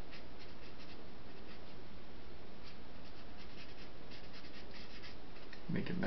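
Pen scratching on paper in short, quick strokes that come in small clusters, as ink is drawn onto a page.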